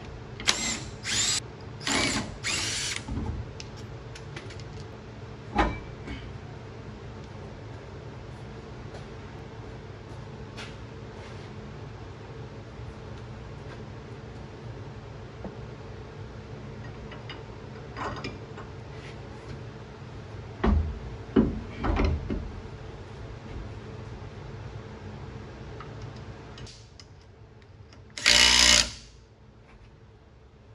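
A cordless power tool spins the lug nuts off a car's rear wheel in four short whirring bursts in the first three seconds. Near the end it gives one more short burst as a lug nut is run back on. In between come a few clunks of the wheel and spacer being handled, over a steady low hum.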